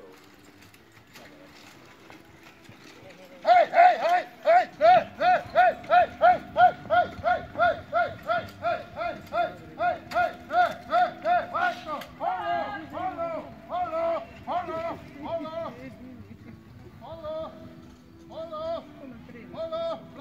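A person's voice shouting rapid rhythmic calls, about three a second, beginning suddenly a few seconds in, then slowing and breaking into shorter groups, over the hoofbeats of a horse team pulling a carriage through a competition obstacle.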